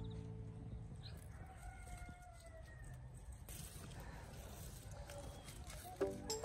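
A rooster crowing faintly, one long call starting about one and a half seconds in, with a weaker call near the end. Background music fades out at the start.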